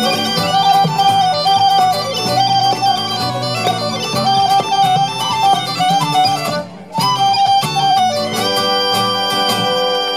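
A metal low whistle plays an ornamented, fast-moving Celtic-style melody over strummed acoustic guitar chords. The melody breaks off briefly a little before seven seconds in, then settles into long held notes near the end.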